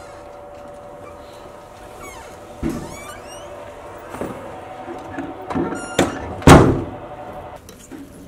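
Hotel room door closing: a sharp latch click about six seconds in, then a heavy thud as it shuts, the loudest sound here. Before it comes a softer thump, and a steady hum runs underneath.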